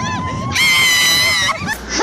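A woman's long, high-pitched scream of thrill on a fairground ride, held steady for about a second and then cut off, with a softer wavering squeal before it.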